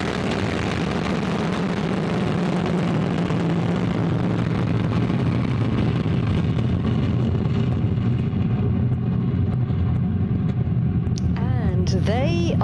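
Steady loud rumble of the Vega rocket's P80 solid-fuel first stage just after liftoff, with a hiss above it that thins out over the second half as the rocket climbs away.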